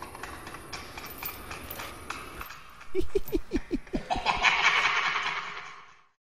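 Horror-film sound design: a faint hiss, then about halfway through a quick burst of staccato laughter falling in pitch, followed by a harsh hissing noise that cuts off suddenly at the end.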